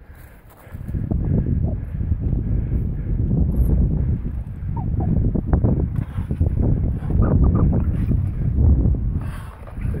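Wind buffeting the camera microphone: a loud, gusting low rumble that starts about a second in. Under it, faint clatter of a mountain bike riding down slickrock.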